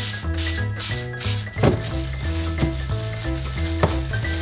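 Trigger spray bottle misting hypochlorous acid water onto a paper towel: several quick hissing sprays in the first second and a half, over background music. Two sharp clicks come later.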